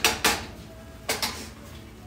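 Plastic slotted spatula scraping and stirring onions and peppers in a skillet: a few quick strokes at the start, then one more soft knock about a second in.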